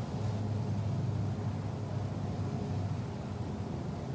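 Pencil drawing on a sketchbook page, faint strokes against a steady low hum.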